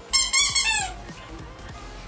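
A rubber squeaky dog toy squeaking sharply twice in quick succession, high-pitched, within the first second.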